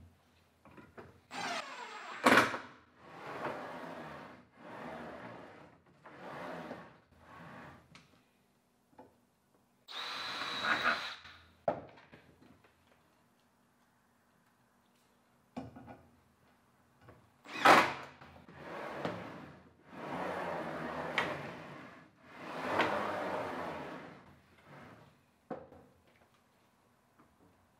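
Cordless drill driving screws into plywood in a series of short runs of a second or two each, in two main groups with a pause of a few seconds between them.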